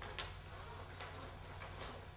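Quiet room tone with a low steady hum and a few faint, irregular clicks and rustles of paper being handled and written on.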